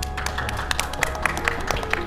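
Applause, dense irregular clapping, over background music with sustained tones.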